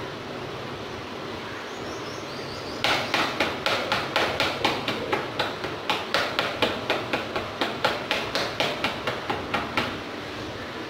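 A small hand tool chopping and knocking through soil in a shallow metal tray, sharp strikes about four a second starting about three seconds in, over a steady background hiss.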